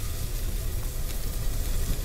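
Duck egg frying in a skillet, a steady sizzling hiss over a low hum.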